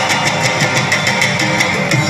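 Live Pashto music played loud through a hall's sound system, with a quick, steady drum beat of about six strokes a second over sustained instrument tones.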